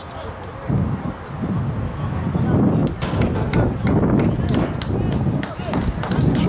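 Indistinct chatter of spectators in the stands, over a low rumble of wind on the microphone, with a few sharp clicks in the second half.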